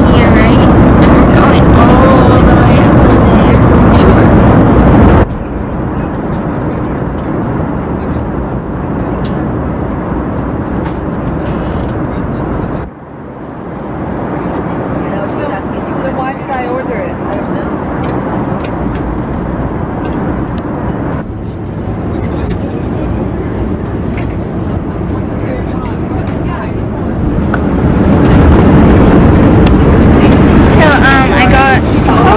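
Steady airliner cabin drone with indistinct voices over it, dropping and rising abruptly in level a few times, loudest in the first five seconds and again near the end.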